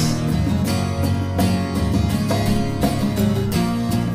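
Acoustic guitar strummed steadily in an instrumental passage of a rock song, with no singing.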